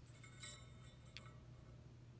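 Faint metallic clink of a steel mass hanger being hooked onto the spring's end loop, with a short ringing, and a second brief ring about a second in, over a low steady hum.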